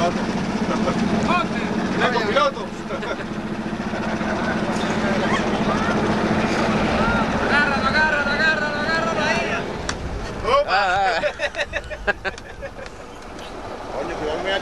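Outboard motor of a small launch running with a steady low drone that eases off about two and a half seconds in, with people's voices talking over it.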